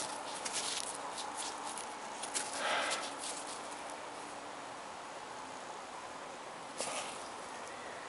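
Quiet outdoor background with faint rustling and small clicks, with a brief soft rustle about three seconds in and another near the end.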